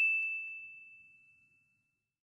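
A single bright electronic chime ringing out and fading away over about a second: an airliner's cabin chime.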